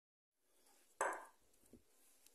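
A moment of dead silence, then a single short knock about a second in from a silicone spatula against a glass mixing bowl, with faint scraping after it as a crumbly tapioca-and-cheese dough is stirred.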